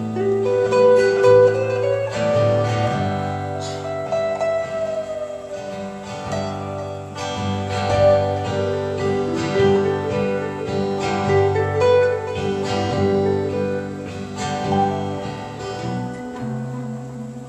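Instrumental break: an acoustic guitar strummed in a steady rhythm under an electric guitar playing a lead melody, with notes that slide up and back down a few seconds in.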